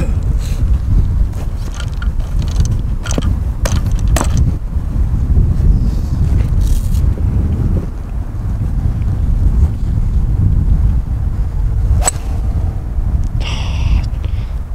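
Wind buffeting the microphone in a steady low rumble, with a single sharp click of a two iron striking a golf ball off the tee near the end.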